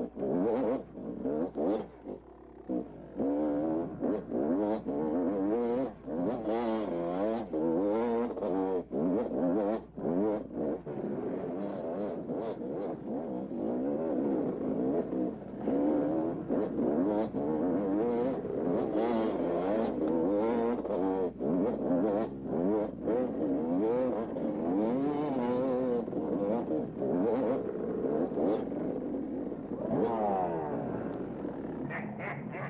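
Dirt bike engine heard from on board, revving up and down continually with the throttle as it rides a rough trail, with a few short dips in the first few seconds.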